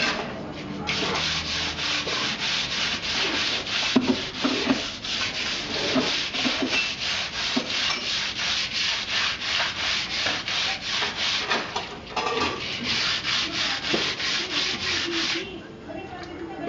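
Rhythmic back-and-forth scraping on a concrete wall, worked by hand, about three strokes a second, with a short pause about twelve seconds in.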